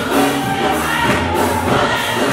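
Gospel choir singing in full voice over a steady instrumental accompaniment with a low bass line.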